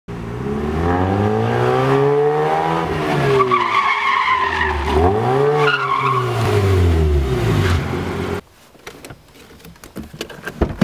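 Mazda RX-8's rotary engine revving up and down twice as the car drives and turns, with tyres squealing in the middle. The sound cuts off suddenly near the end, leaving a few faint clicks.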